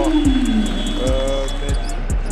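A basketball being dribbled on a hardwood court, a run of short evenly spaced bounces, under arena music. A drawn-out pitched voice-like sound slides down in pitch over the first half-second.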